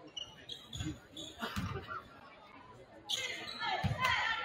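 Basketball bouncing on a hardwood gym floor: a few separate thumps as a player dribbles up the court. Voices from the gym rise near the end.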